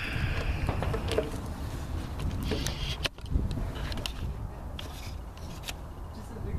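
Low steady wind rumble on the microphone, with a few faint clicks and knocks scattered through it from handling a pistol and its magazines on a wooden bench.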